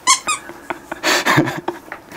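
A woman's high-pitched, squealing laughter in short breathless bursts, with a gasp about a second in and a few short clicks.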